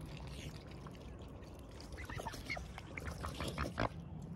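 Mute swans and cygnets dabbling their bills in shallow water as they feed, a run of quick wet slurping clicks that gets busier about halfway through, with a loud splash-click near the end.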